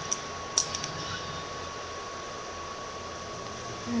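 Steady hiss with a faint, even high whine, broken in the first second by a couple of small sharp clicks of plastic Lego bricks being handled and pressed together.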